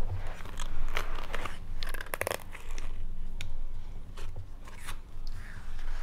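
A toddler handling and mouthing a paper greeting card: scattered soft crackles and clicks of card against hands and mouth, with a short flurry about two seconds in.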